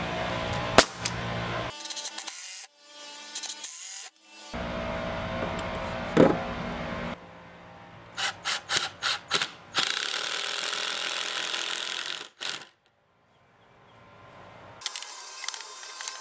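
Cordless Ryobi impact driver driving screws into a pine 2x4 frame: several runs of steady rapid hammering, with a string of short trigger blips between them as a screw is started. A single sharp crack about a second in.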